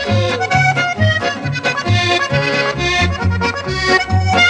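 Oberkrainer-style polka band playing an instrumental polka, the accordion leading over a steady bass beat.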